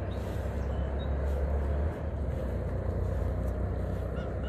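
A low, noisy outdoor rumble, heaviest for the first two seconds and then easing a little, with a few faint short chirps above it.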